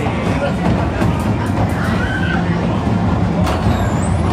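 Roller coaster train pulling out of the loading station, over a steady low rumble and the chatter of riders.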